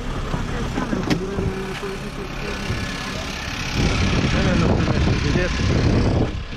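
Minibus engine running with voices over it. About four seconds in, louder street traffic noise with a heavy low rumble takes over.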